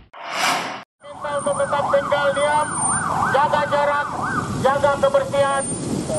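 A short rushing burst of noise, then a vehicle siren wailing rapidly up and down, about two sweeps a second. A voice joins near the end.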